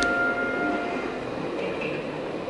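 Soundtrack of a darkened video-projection installation: a steady rumbling noise with a held tone that cuts off about a second in.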